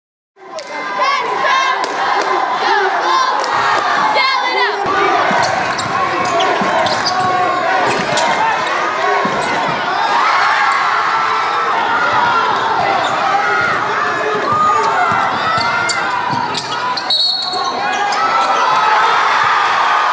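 Basketball game sound in a gym: a crowd of many voices shouting and cheering, with a basketball bouncing on the hardwood court. It fades in about half a second in and stays loud and steady.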